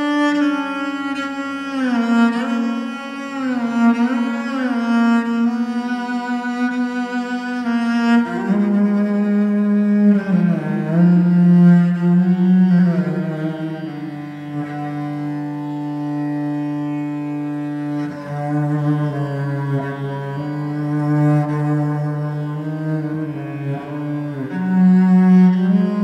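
Solo cello played with the bow in long sustained notes with vibrato, moving down to lower notes about eight seconds in.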